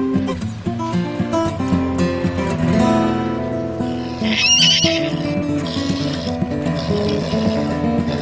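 A horse whinnies once, briefly and high-pitched, about four seconds in, over background music with guitar.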